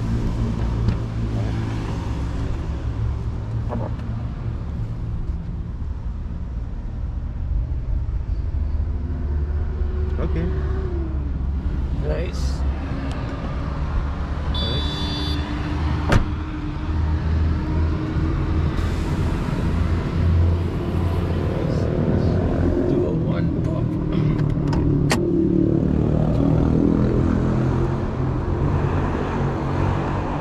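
A car engine running steadily, a low rumble throughout, with a few sharp clicks in the middle stretch.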